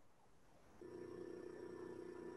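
Near silence, then about a second in a faint, steady electrical hum made of several held tones comes in and stays.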